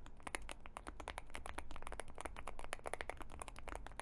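Fast typing on a Boog 75 full-aluminium Hall-effect keyboard with Gateron magnetic switches: a quick, continuous run of glassy-sounding key clacks.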